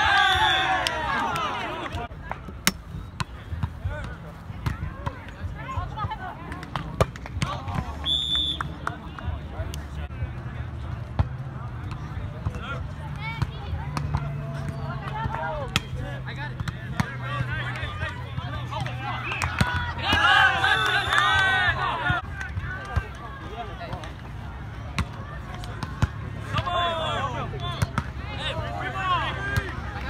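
Men's outdoor volleyball game: players shouting and calling to each other, loudest about two-thirds of the way through, with sharp slaps of the ball being hit now and then.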